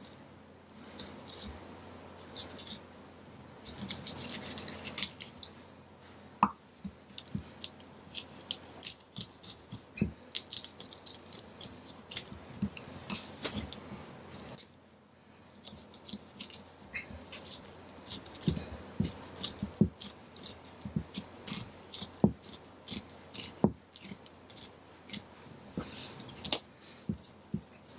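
A deba knife cutting a cutlassfish fillet off the backbone on a wooden chopping board: an irregular run of short scraping clicks as the blade works along the bones, with a few louder ticks.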